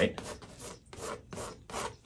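Palette knife dragged over wet oil paint on a canvas in several short, quiet scraping strokes, about five in two seconds.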